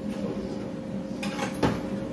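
Short clatter of kitchen things being handled, ending in a sharp knock about one and a half seconds in, over a steady appliance hum.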